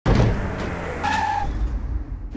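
Sound effect of a vehicle skidding, tyres screeching over a low engine rumble. It starts suddenly, and a sharper squeal comes in about a second in.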